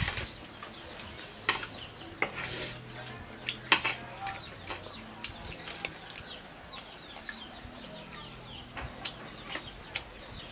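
Eating sounds: sharp clicks and taps of metal spoons against ceramic plates, with mouth sounds of chewing. Small birds chirp in the background, more often in the second half.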